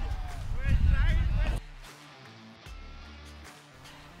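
Cricket players crying out in reaction to a delivery, over a heavy low rumble. The sound cuts off abruptly about a second and a half in, and faint music follows.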